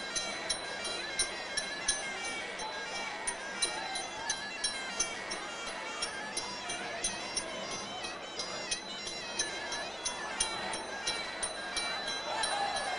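Sarama, the live music played during Muay Thai fights: the pi java oboe playing a wavering, reedy melody over a steady beat of sharp cymbal clicks from the ching and drums.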